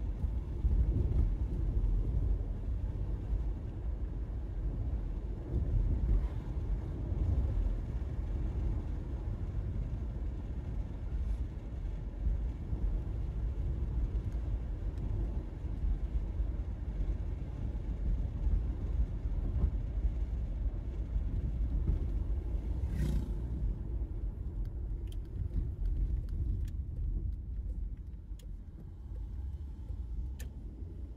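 A car's steady low engine and tyre rumble heard from inside the cabin while driving, easing off slightly near the end as the car turns. A single short, sharp sound cuts through about two-thirds of the way in.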